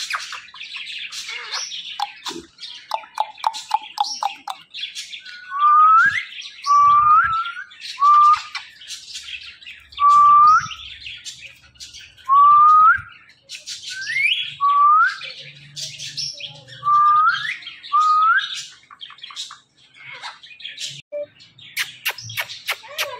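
Indian ringneck parakeets calling: quick high chirps and chatter, with a run of about nine loud calls, each rising in pitch, repeated every second or two from about six seconds in.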